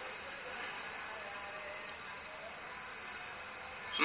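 Quiet background with a faint, steady high-pitched chirring.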